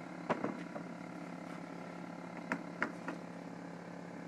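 A few light knocks and clicks of MDF strips being handled and set down on the work table, over a steady low hum.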